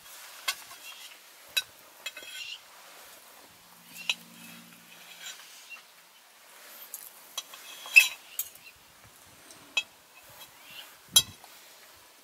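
A handful of sharp clinks and clicks of cups and cutlery being handled close to the microphone, scattered unevenly, the loudest about eight and eleven seconds in.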